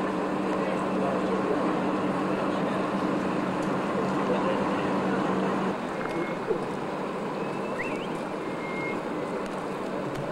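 A ship's engine hums steadily under a noisy outdoor haze with crowd voices and wind on the microphone. The hum breaks off suddenly about halfway through, leaving the crowd and wind noise, with a few short high chirps near the end.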